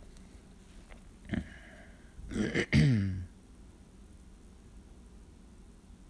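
A man clearing his throat once, about two and a half seconds in, lasting under a second.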